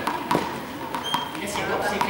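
Indistinct voices of several people echoing in a large sports hall, with a few sharp knocks.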